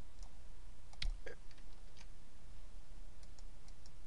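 Computer mouse clicks, a few short faint ones, the plainest about a second in, over a steady low electrical hum.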